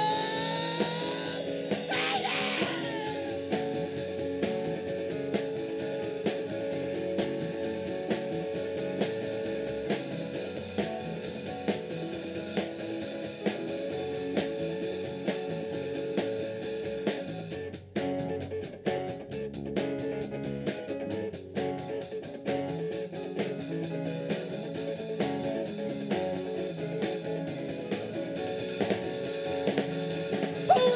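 Live rock band playing an instrumental passage on electric guitar, bass guitar, keyboard and drum kit, with a steady drum beat.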